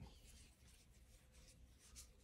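Near silence, with faint, irregular scratching of a metal crochet hook drawing cotton yarn through stitches.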